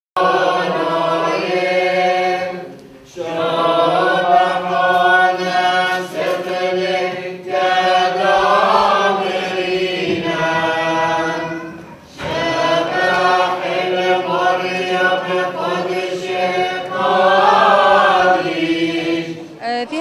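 Liturgical chant of the mass sung by several voices together, in long phrases over a steady low held note, with two brief breaks about 3 and 12 seconds in.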